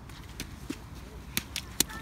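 A toddler's rubber wellington boots slapping on wet sand as she jumps: a few short, sharp slaps at uneven spacing, the loudest two in the second half.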